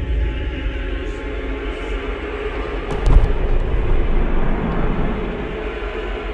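Deep, steady low rumble from a film trailer's sound design, with one short hit about three seconds in.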